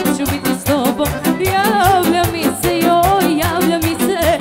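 Live Serbian folk band playing dance music: a violin carries a wavering, ornamented melody over a quick, steady beat of drums and bass.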